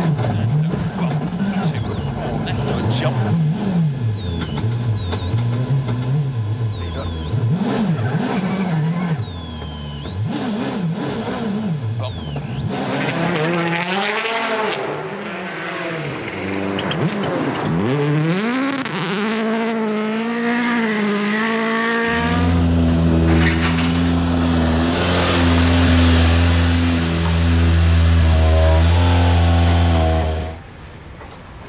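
Hyundai i20 Coupe WRC rally car's turbocharged four-cylinder engine at full attack on a stage, its pitch rising and falling with throttle and gear changes, with a high whine above it in the first half. In the last several seconds the sound settles into a steady low drone.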